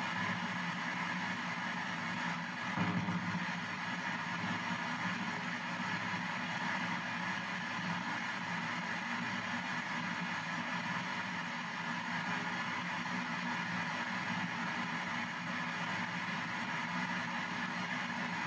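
P-SB7 ghost box sweeping the FM band in reverse, a new frequency every 200 milliseconds, giving steady radio static and hiss, a little louder for a moment about three seconds in.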